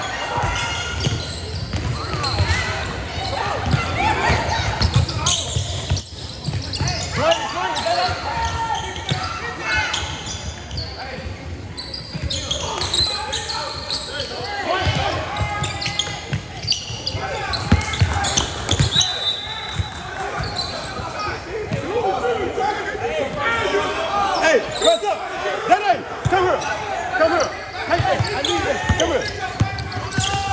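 Basketball being dribbled on a hardwood gym floor, with repeated low thuds, under a continuous mix of shouts and chatter from players and spectators in a large gym.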